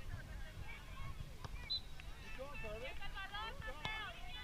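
Distant voices of players and spectators calling out across the field, high-pitched and overlapping, picking up a little past halfway, over a steady low wind rumble on the microphone.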